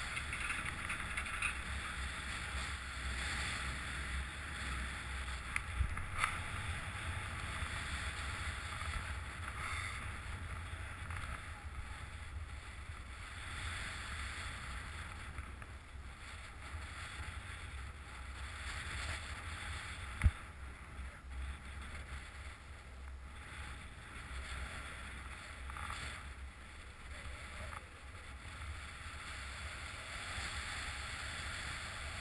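Wind buffeting the camera microphone on a moving chairlift: a steady low rumble with a hiss over it. There are two sharp knocks, one about a fifth of the way in and a louder one about two-thirds in.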